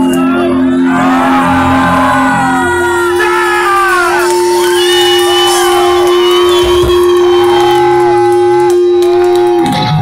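Live rock band playing through stage speakers, with electric guitars: one long held note sounds from about three seconds in until just before the end, with bending guitar lines and shouting voices over it.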